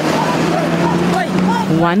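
Road traffic at a busy intersection: a vehicle engine running steadily close by, with voices faint in the background.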